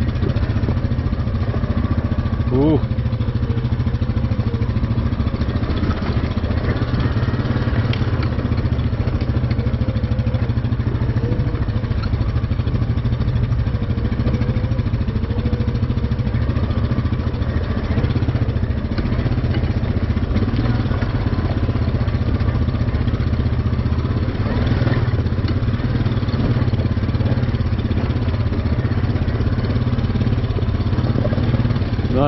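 ATV engine running steadily at low, even revs while the machine crawls down a rocky trail.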